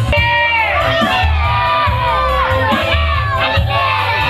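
Background music with a steady bass beat, with a crowd of voices shouting and cheering over it from the start.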